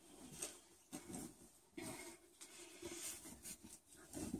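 Faint, intermittent rustling of a bed sheet being handled and spread over a mattress, in several soft bursts.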